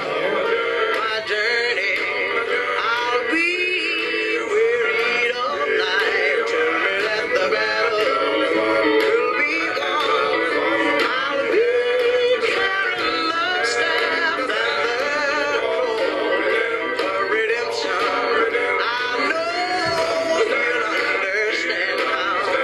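Music with singing, several voices holding and wavering around sustained notes, at a steady level throughout.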